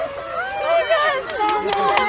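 Spectators' excited voices talking and calling out over one another, with several short sharp clicks in the second second.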